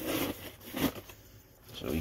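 Sealed baseball card packs in foil and wax-paper wrappers rustling briefly as they are handled, with a light tap a little under a second in.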